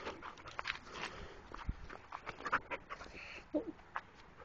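A small dog panting, with irregular scuffs and clicks on gravelly dirt as it moves about close by.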